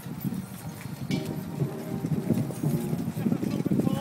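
Hoofbeats of a large troop of cavalry horses moving across grass, many overlapping footfalls that grow louder as the horses come closer.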